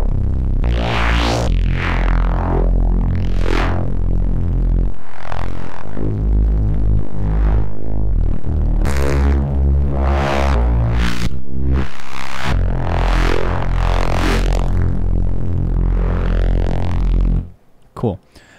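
Neuro bass synth patch built in Bitwig's Poly Grid, playing a line of heavy, sustained low notes while a modulator sweeps its filters so the tone morphs in and out in repeated rising and falling sweeps. It cuts off suddenly near the end.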